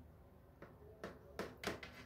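Knife scoring soft dough in a round metal baking tray: about half a dozen faint, sharp taps as the blade meets the tray, from about half a second in.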